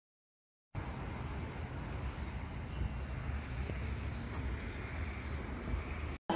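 Outdoor ambience that starts abruptly under a second in: a steady low rumble with a faint hiss, and a small bird chirping three times in quick succession about two seconds in.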